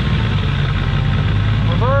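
Supercharged 5.4-litre V8 of a 2002 Ford F-150 Harley-Davidson idling steadily, its idle note dropping a little just after the start as the transmission is put into gear.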